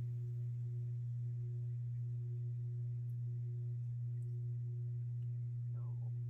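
Steady low electrical hum, one unchanging low tone with a faint higher one above it, with a brief faint rising sound near the end.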